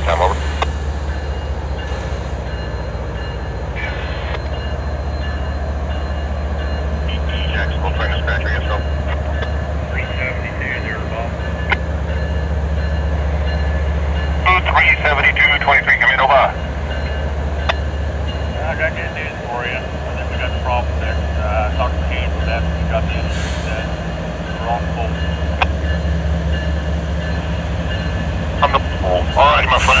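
GE ET44AH diesel locomotive's V12 engine running at a steady low rumble while the train stands waiting at a signal.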